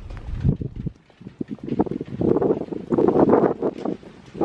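Wind buffeting a handheld phone's microphone during a walk, coming in uneven gusts that dip about a second in and are strongest in the second half.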